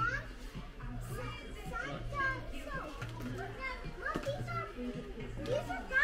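Young children's voices chattering and calling, not clearly worded, over faint background music.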